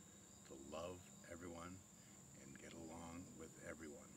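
Quiet male speech over a steady high-pitched drone of crickets.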